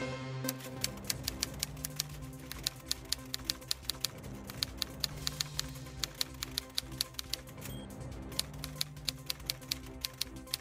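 Typewriter keys clacking in irregular runs of several strokes a second, with a short pause near the end, over quiet background music.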